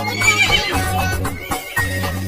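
A horse whinny sound effect, wavering in pitch in the first second, over the bouncy backing music of a children's song.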